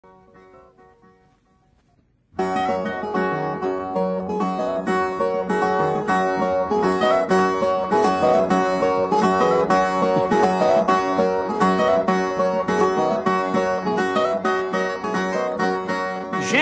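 Instrumental intro on Brazilian violas: fast plucked runs of many quick notes over a steady pulse. It starts sharply about two seconds in, after a faint fading sound.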